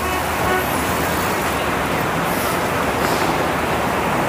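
City road traffic ambience: the steady rumble and hiss of many vehicles, with a few faint short horn toots.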